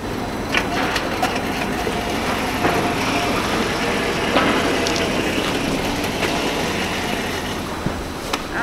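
A small motorized hand cart running, a steady mechanical hum with scattered clicks and clatter from the steel pots and plastic buckets on its bed.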